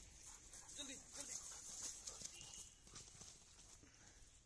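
Faint rustling and snapping in dry grass and twigs, an uneven run of light ticks and crackles that thins out in the last second.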